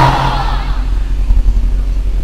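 Steady low mains hum from an open public-address microphone system during a pause in a chanted sermon; the last of the voice fades out within the first half second.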